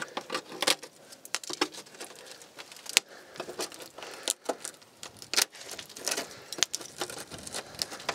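Irregular small metallic clicks, taps and scrapes of hand work at a car's rusted rear wheel arch, with no power tool running.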